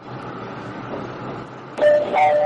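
A steady hiss of noise like radio static, then a sharp click about two seconds in and a steady electronic beep tone that carries on: produced sound effects opening a radio programme's intro.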